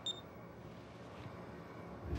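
A single short high electronic beep from a mobile phone as the call is ended, followed by quiet room tone.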